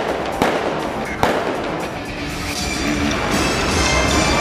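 Stunt-show music playing over outdoor loudspeakers, with two sharp bangs in the first second and a half over a dense crackling.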